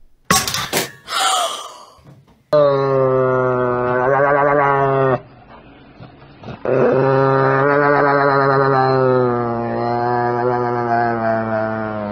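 A raw egg cracking as it hits a hard floor, knocked off a high kitchen cabinet by a cat. Then a dog gives a long, low, wavering howl in two drawn-out stretches, the second the longer.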